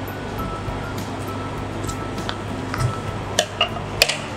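Soft background music over a steady low hum, with two light clinks of kitchenware about three and a half seconds in.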